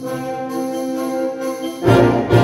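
Wind ensemble playing a live performance: a softer held chord sits in the middle range with the bass dropped out. Just before the end the full band comes back in loudly, low brass included.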